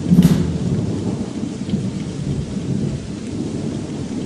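Thunderstorm: a sharp crack of thunder just after the start, then a long, low rolling rumble with rain.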